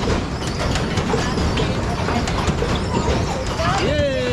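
Kiddie jet-ski carnival ride spinning, with a steady rumble and many quick rattling clicks, under background voices; a voice calls out near the end.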